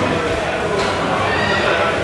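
Many people talking over one another in a busy room, with one high voice rising in pitch in the second half.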